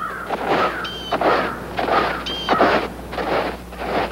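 Footsteps crunching through snow, about two steps a second, with a short high chirp from a bird every second and a half or so.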